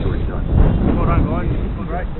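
A voice talking over a steady low rumble of wind on the microphone.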